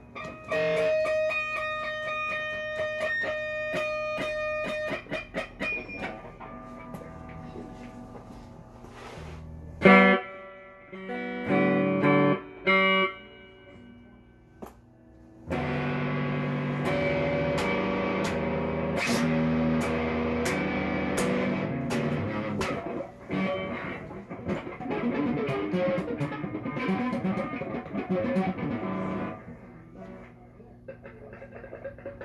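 Electric guitar being played: a few long ringing notes at first, a sharp loud strike about ten seconds in, a few chords, a brief lull, then busier continuous playing through most of the second half.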